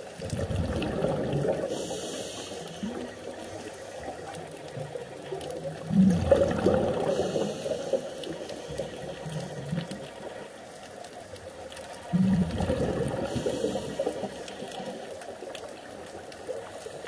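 Scuba regulator breathing underwater: bubbles rush out on each exhalation, and a fainter hiss follows on the inhalation, about one breath every six seconds.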